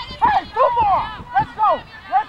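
Several high-pitched women's voices shouting over one another, in short rising-and-falling calls that follow each other quickly.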